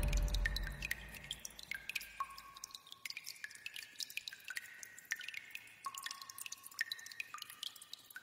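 A loud sound fades out over the first second, then faint, scattered drip-like plinks follow at irregular intervals, each a short high note, the pitch shifting from one plink to the next.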